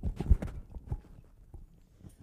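Irregular knocks and clicks of handling at a lectern as an item is passed across and set down, thinning out after about a second.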